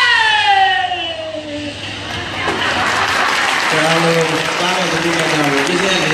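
A singer's long held note slides down in pitch and fades out about a second and a half in. Then an audience applauds, with voices talking over the clapping from about the middle onward.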